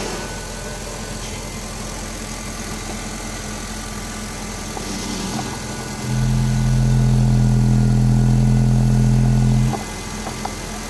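A 2006 Honda Civic's 1.8-litre four-cylinder engine running steadily with the oil filler cap being taken off. About six seconds in, the engine sound jumps to a louder, steady hum that holds for about three and a half seconds, then drops back sharply.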